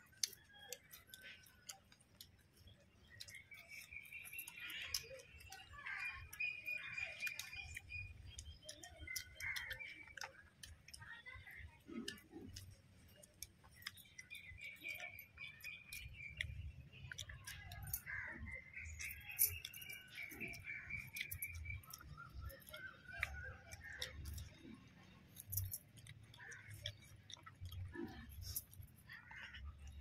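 Faint eating sounds: chewing, and fingers mixing rice on a banana leaf, with small clicks throughout. Birds chirp in the background in several stretches.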